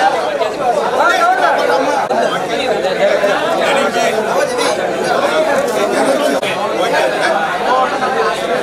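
Crowd chatter: many men talking at once in overlapping, unintelligible voices, steady throughout, in a large hall.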